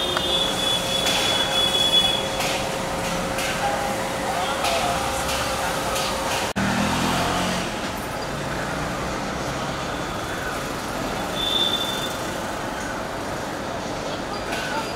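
Street traffic ambience: passing vehicles with a steady hum, some short high squeals and distant voices. The sound cuts out for an instant about halfway through, then carries on with a low hum.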